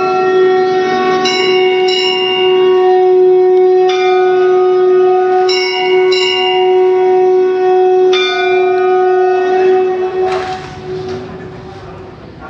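A long, steady horn-like tone on one held pitch. Its upper overtones come and go several times, and it fades out about ten seconds in.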